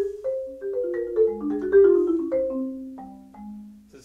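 Marimba played with four Mike Balter Titanium Series 323R mallets: a quick, free-flowing run of struck notes, some sounding together, each ringing briefly, settling onto lower notes near the end. The attack of each note comes through clean rather than muddy.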